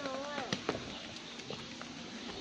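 A person's voice talking briefly at the start, then two sharp taps about half a second in, footsteps on stone steps, followed by quieter walking.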